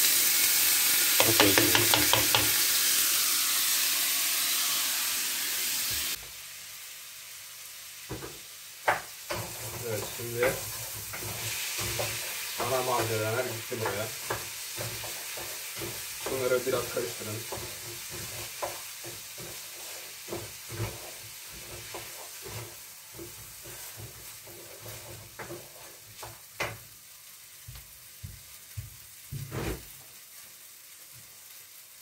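Washed rice poured into hot oil and browned vermicelli in a granite-coated pan, setting off a loud sizzle. About six seconds in the level drops suddenly, and quieter frying follows, with a spoon stirring and clicking against the pan.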